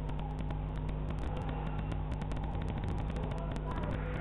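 A steady low hum with frequent, irregular crackling clicks over it.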